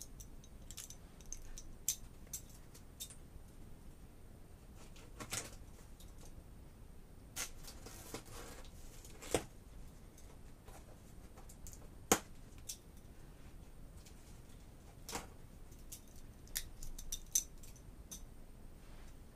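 Cardboard shipping box being opened by hand: scattered sharp clicks and scrapes, with a stretch of rustling near the middle and a quick cluster of clicks near the end, as the packing tape and cardboard flaps are worked loose.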